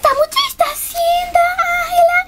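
A high child's voice singing without clear words: a few short notes, then one long steady note held through the second half.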